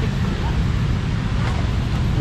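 Steady outdoor background noise: a low rumble of road traffic, with wind on the microphone.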